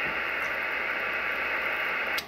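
Steady receiver hiss and static from a Kenwood TS-480SAT HF transceiver's speaker, tuned to the 10-metre band on lower sideband. The hiss is cut off above the voice range by the sideband filter.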